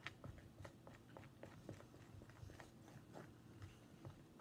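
Faint, irregular small clicks and sticky squelches of a stir stick working a thick, gluey dough of hair conditioner and cornstarch in a bowl.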